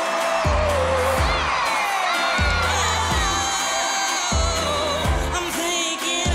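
Pop song performed live on stage: a singer holds a long high note with vibrato that ends about a second in, over a band with a steady kick-drum beat that plays on.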